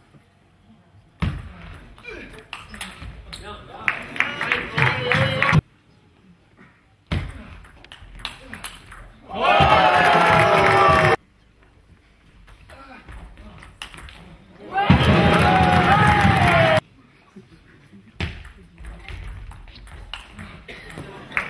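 Table tennis ball clicking back and forth between rubber bats and the table in fast rallies. Two loud bursts of shouting voices, about two seconds each, follow won points. The rallies are spliced together, with abrupt silent gaps between them.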